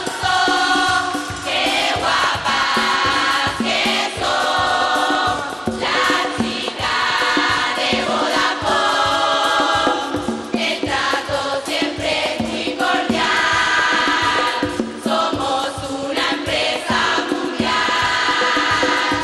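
A female murga chorus singing a song together into microphones, backed by a steady percussion beat.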